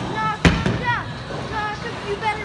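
A bowling ball lands on the lane with a single sharp thud about half a second in, as it leaves the bowler's hand.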